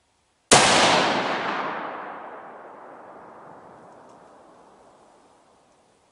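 A single 6.5 Creedmoor rifle shot from a Savage 12 FV, about half a second in, followed by a long echo that fades away over about five seconds.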